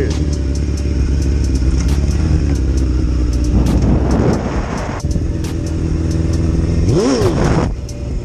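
Motorcycle engine running, revved up and back down twice, about halfway through and again near the end, in attempts to lift the front wheel into a wheelie.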